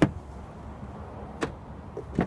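Car rear door being opened: a sharp click of the latch right at the start and a second, fainter click about a second and a half later, over a steady low rumble.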